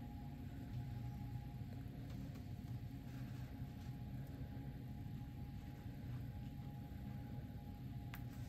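Steady low background hum with a faint thin steady tone above it, with a single sharp click at the very end.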